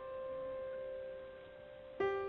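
Background piano music: a held chord ringing on and slowly fading, with no new note struck.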